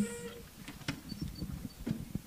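Faint, irregular knocks and rustles of handling at a lectern, as papers and objects on it are moved and set down.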